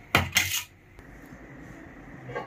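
Two sharp clanks of steel kitchenware against a steel kadai, close together, each ringing briefly, followed by a faint click.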